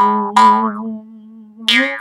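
Jaw harp being plucked: three twanging notes, at the start, about half a second in and near the end, each with a sharp attack that rings and fades over a steady low drone.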